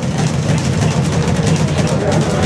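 Boxing-gym din: music playing, with a fast, steady clatter of strikes over it.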